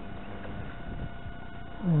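Quiet, steady outdoor background noise with a faint constant hum, and a man's voice beginning a word at the very end.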